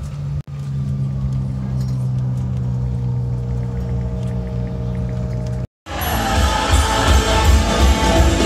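Steady low engine drone heard from inside a vehicle's cabin, with a couple of faint constant tones above it. Just before six seconds in it cuts off and gives way to loud festive music.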